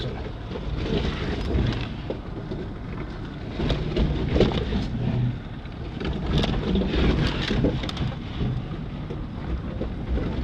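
Off-road 4x4 creeping down a steep rocky trail, heard from inside the cab: a low engine and drivetrain rumble with scattered knocks and rattles as the tyres climb over rocks, busiest in the middle of the stretch.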